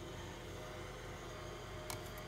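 Quiet room tone with a faint steady hum, and one small click near the end as the quadcopter is set down on a digital scale.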